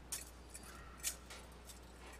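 Two faint, sharp clicks about a second apart over quiet room tone: small handling noises.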